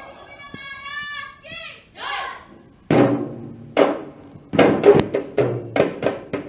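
A boy's voice calls out in a long held tone. About three seconds in, dhol barrel drums start up with loud single strikes that come faster near the end, opening a dhol cholom drum performance.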